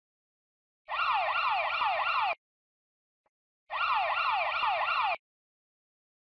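Incoming-incident audible alarm of a Terrafix mobile data terminal: two bursts of about one and a half seconds, each a run of quick falling electronic sweeps, about four a second, like a siren. It signals that a new dispatch has arrived and has not yet been acknowledged.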